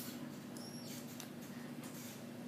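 Quiet room tone: a steady low hum with a few faint clicks and a brief high-pitched squeak about half a second in.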